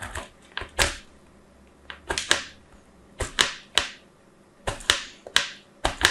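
A piece of dry soap being shaved across the blades of a plastic grater, making about ten crisp, crackly scraping strokes, several in quick pairs.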